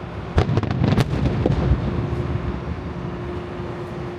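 Aerial firework shells from a wide starmine barrage bursting: a sharp bang about half a second in, then a quick run of bangs over the next second, with a rumble that dies away.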